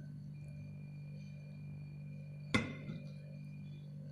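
A single sharp clink of a metal spoon against a glass bowl about two and a half seconds in, ringing briefly, over a steady low hum.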